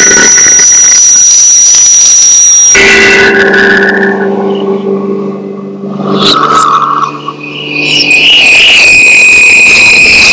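Loud live experimental electronic music: sustained drone tones and a high whistling squeal that switch abruptly about three seconds in, thin out and change again around six to seven seconds, and settle on a high steady whine near the end.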